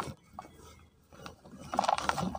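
Dry, crumbly cement blocks being crushed by hand, with gritty crunching and crackling as the pieces break apart. The crunching dies away just after the start, goes almost quiet in the middle, and starts again near the end.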